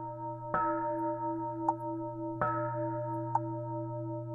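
Instrumental intro of a Buddhist chant backing track: a bell struck twice, about two seconds apart, each strike ringing on over a steady low drone. Lighter ticks fall between the strikes.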